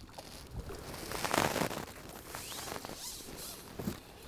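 A hooked fish splashing and thrashing at the water's surface as it is drawn into a landing net, with the loudest splash just over a second in, followed by water dripping and the net being handled.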